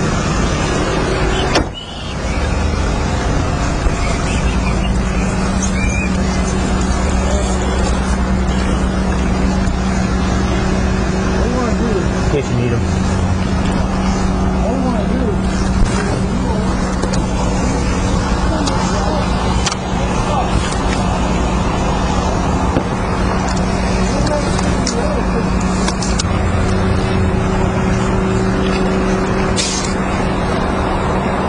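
Steady loud rushing background noise with a low hum that comes in a few seconds in, and faint, indistinct voices under it.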